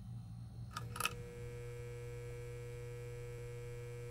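A steady low electrical hum, broken by two sharp clicks about a second in, the second one louder; after the clicks the hum carries on evenly with several thin held tones over it.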